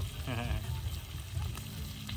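Steak frying in oil in a pan on a portable gas camp stove, a steady sizzle under a low rumble. A short wavering call, bleat-like or a voice, cuts in briefly about a quarter second in.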